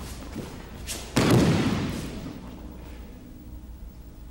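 A body landing on a tatami mat as the thrown partner hits the floor: one heavy thud about a second in, dying away over about a second, after a few softer knocks of feet on the mat.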